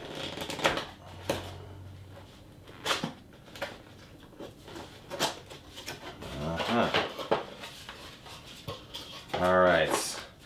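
Cardboard camera packaging handled by hand: inner box flaps and a cardboard insert folded back and pulled open, making a string of light knocks, taps and paper scrapes. A voice comes in near the end.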